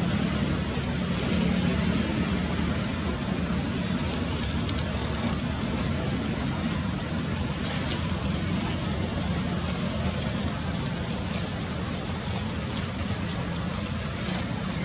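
Steady outdoor background rumble and hiss, even throughout, with a low hum-like band.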